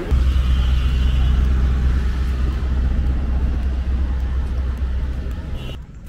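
Street traffic with a loud, steady low vehicle rumble, which cuts off abruptly near the end.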